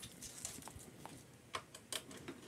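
A few faint clicks and taps of a guitar cable being handled, mostly in the second half.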